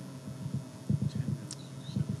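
A run of soft, irregular low thumps and bumps starting about a second in, with a faint click, over a faint steady room hum.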